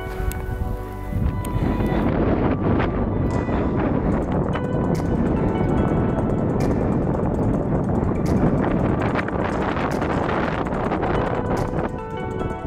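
Wind buffeting the microphone, with crunching footsteps in snow about once a second, over background music.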